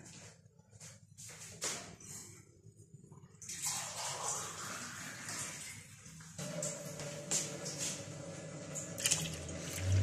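Water running into a container, beginning about three and a half seconds in after a few faint clicks and going on steadily.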